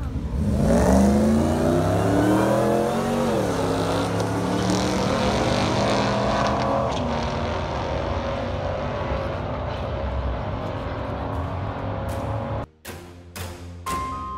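A supercharged V8 Ford SVT Lightning pickup and a Mustang launch down a drag strip. The engine notes climb, drop at a gearshift about three seconds in, climb and drop at another shift about seven seconds in, then hold and fade as the vehicles run away. Near the end the sound cuts to music with drum hits.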